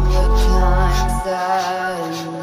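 Background music: a deep bass note under a sustained melodic line, with the bass dropping out a little over a second in, and light percussion ticking above.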